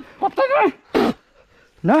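A man's short vocal sounds: brief pitched calls, a sharp breathy burst about a second in, and a rising "nah" near the end.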